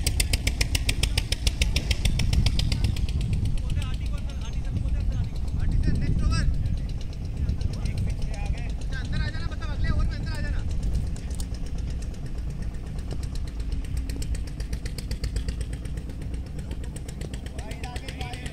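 Open-air ambience at a cricket ground: a steady low rumble with a rapid, even ticking, and distant shouts from players on the field now and then, around the middle.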